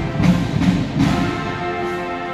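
Marching band playing brass and drums: a run of loud drum strikes in the first second, then a held brass chord.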